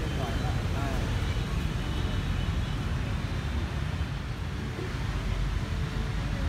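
Outdoor city ambience: a steady low rumble of traffic, with faint voices of people in the first second.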